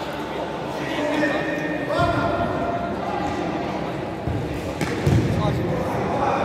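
Futsal ball thudding off feet and the sports-hall floor, with strong thuds about two seconds in and again near five seconds, under indistinct shouting from players echoing in the large hall.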